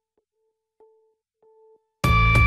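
Faint electronic tone like a telephone line signal: one steady beep broken by two short gaps, with faint clicks.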